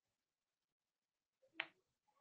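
Near silence: room tone, with one short click about one and a half seconds in.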